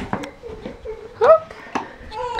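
A tired toddler whimpering and fussing in short wordless cries, with one sharp rising wail about a second and a quarter in as the loudest sound. A few light clicks of handling come in between.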